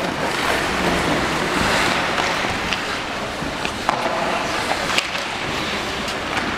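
Indoor ice hockey rink during play: a steady wash of skates scraping the ice and crowd noise, broken by a few sharp clacks from sticks and puck. A short pitched shout is heard about four seconds in.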